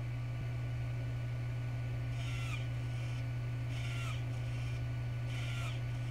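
Hobby servo motor moving three times, each a short whir of about half a second with a falling pitch, about one and a half seconds apart, over a steady electrical hum. Set to an 80° angle, the servo arm does not quite press the 3D printer's touchscreen.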